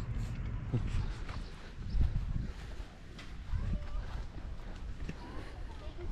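Uneven low rumble on an outdoor camera microphone, with a few light knocks and faint, scattered voices.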